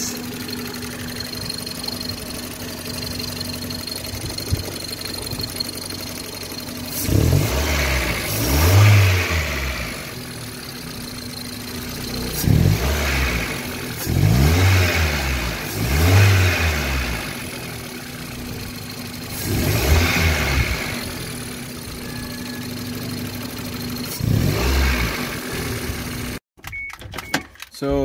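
Toyota 4E-series four-cylinder engine idling steadily, then blipped up and back down about six times. The engine is being run to check a newly fitted fuel pressure regulator for fuel leaks.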